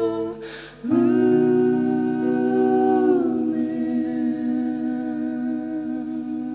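Song with wordless held vocal notes. The sound drops out briefly about half a second in, then a long sustained note comes in and slides down in pitch about three seconds in.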